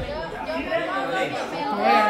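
Several people talking at once: indistinct chatter of a group's voices, with one voice rising louder near the end.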